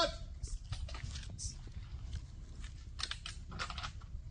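Faint outdoor ambience on a phone recording: a steady low rumble with brief scattered hissing rustles and faint, indistinct voices, one at the very start.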